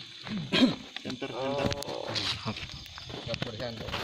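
A person's wordless vocal sounds, wavering in pitch, with a loud harsh burst about half a second in: the voice of someone held to be possessed by a spirit.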